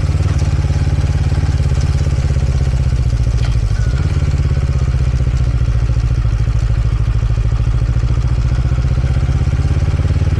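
Motorcycle engine running steadily as the bike rolls slowly along, a constant low drone that holds its pitch throughout.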